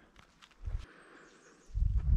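Two deep, dull thumps, a short one about two-thirds of a second in and a longer one near the end, from footsteps and body movement while a giant exercise-band slingshot loaded with a chunk of log is drawn back.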